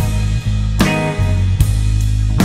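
Recorded heavy rock band playing: electric guitar, bass guitar and drum kit, with loud drum and cymbal hits landing on a steady beat a little more than once a second.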